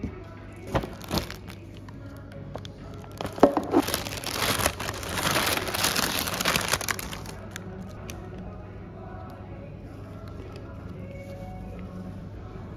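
Plastic wrapping crinkling and rustling as items are pulled out and unwrapped by hand: two short rustles about a second in, then a longer spell of crinkling from about three to seven seconds in. Soft background music runs underneath.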